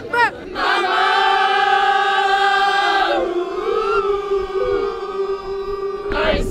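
Silent-disco dancers singing one long held note together, unaccompanied, because the music is only in their headphones. The note thins and wavers a little about halfway through.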